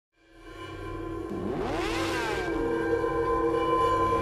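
Intro music for a logo animation: a sustained, droning synth chord fades in. About a second and a half in, a sweeping sound effect rises and then falls in pitch.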